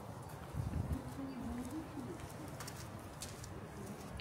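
A bird cooing once: a low wavering call about a second long.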